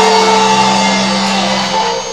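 Church band music: long held chords that slowly grow quieter.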